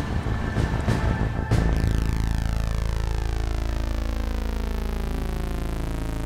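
A small camera drone's propellers start up suddenly about a second and a half in, then hold a steady whirring hum with a sweeping, phasing tone.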